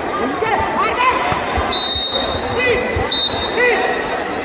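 Spectators chattering in a large, echoing sports hall during a wushu bout, with dull thumps of blows and footfalls on the mat. Two short, steady high whistle blasts come about two and three seconds in.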